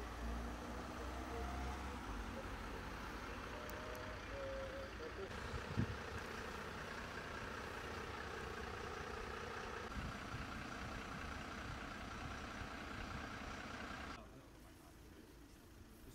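A car driving past with a deep engine rumble for the first couple of seconds, then the steady engine hum of an idling fire engine. A single short knock comes about six seconds in, and the sound drops abruptly quieter near the end.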